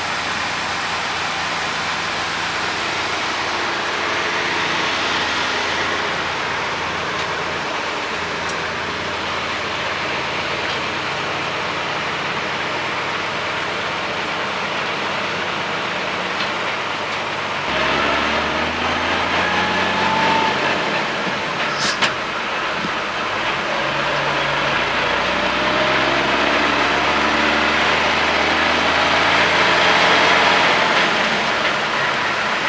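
Unimog expedition truck's diesel engine running at idle, heard from the cab. About 18 s in it grows louder and pulls away, rising in pitch as the truck gathers speed, with a single sharp click a few seconds later.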